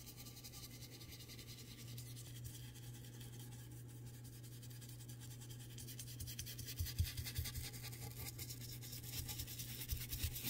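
Stiff paintbrush scrubbing and dabbing thick blue paint onto a canvas, its bristles scratching steadily across the textured surface. A few soft thumps come as the brush is pressed down, the loudest about seven seconds in.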